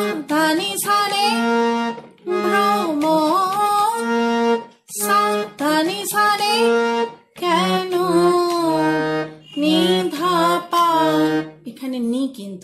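Harmonium playing a slow melody in held reed notes, with a woman's voice singing the same line along with it. The same short phrase comes three times, then a lower phrase follows.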